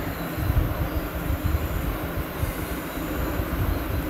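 Steady low rumbling background noise with an uneven churn at the bottom end, loud enough to fill the pause.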